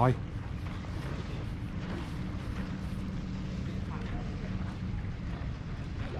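Boat engine running steadily: a low drone with a faint steady hum over outdoor harbour ambience.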